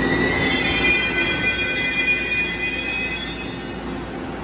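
Tze-Chiang express train's wheels squealing as it brakes to a stop. It is a high squeal of several tones that starts suddenly, holds steady and fades out near the end, over a low rumble.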